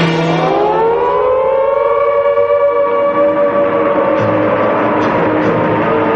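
A siren wailing: its pitch rises over the first two seconds, holds, then slowly falls away, in the way an air-raid siren winds up and runs down.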